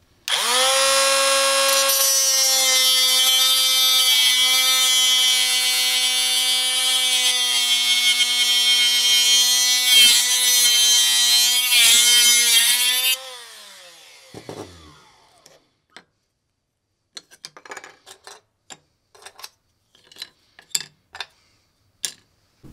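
Parkside cordless mini angle grinder's cut-off disc running and cutting through a printed circuit board: a steady high whine for about thirteen seconds, dipping briefly twice, then falling in pitch as the motor winds down. A few light clicks and taps of the cut board pieces being handled follow.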